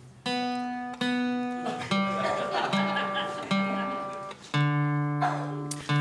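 A stringed instrument being tuned: a plucked note sounded twice, then a slightly lower note three times, then two notes sounding together and held for about a second and a half.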